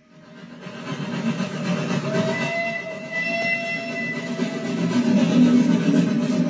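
Cartoon soundtrack of a moving train, heard through a TV's speakers: a steady rumbling run that fades in from silence over the first second, with a held whistle tone in the middle.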